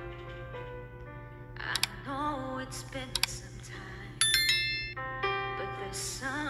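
Live band music: held keyboard chords under short phrases from a female singer. A bright, bell-like chime rings out about four seconds in.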